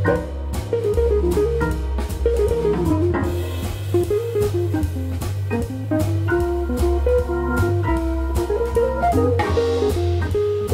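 Jazz organ quartet playing a hard-swinging bluesy shuffle. An electric guitar stands out over a steady bass line from the organ, a single-note melodic line winds up and down, and the drum kit keeps time on the cymbals.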